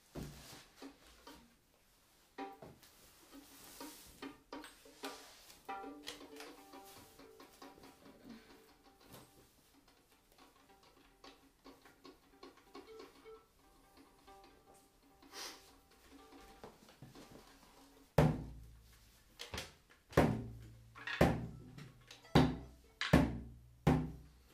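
Cloth rustling and a few soft fiddle notes, then in the last six seconds a calf-skin bodhran struck with a blackwood tipper: seven or so single deep thumps, about one a second and much louder than anything before them.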